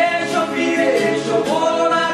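Music: a song in which singing voices are to the fore, with sliding sung notes.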